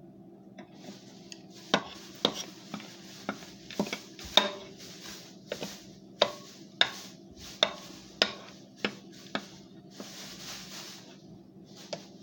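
A metal spoon scraping and clicking against a plate while scooping through powdery Argo laundry starch mixed with arrowroot, with the compacted starch crunching. About fifteen sharp clicks, with soft gritty hissing between them, over a faint steady hum.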